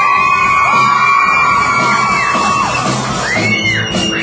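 Rock band playing live, loud, with a long held high note that bends down about two and a half seconds in, then a few short rising-and-falling bends near the end over the bass and drums.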